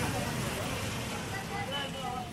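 People's voices talking, not in the foreground, over a steady low rumble.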